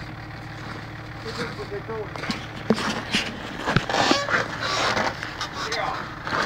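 Toyota Land Cruiser HJ60's 2H straight-six diesel running steadily, driving its PTO winch, under a few scattered knocks and crunching in snow.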